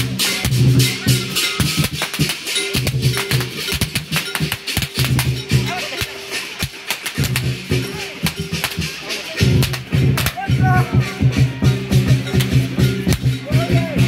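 Lion dance percussion: a big drum beaten in fast strokes with crashing cymbals. It thins out about six seconds in and comes back loud and dense about three seconds later.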